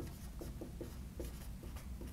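Dry-erase marker writing on a whiteboard: short, faint strokes, about four a second.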